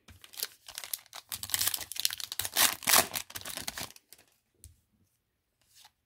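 Trading-card pack wrapper being torn open and crinkled by hand, a run of rustling tears that stops about four seconds in.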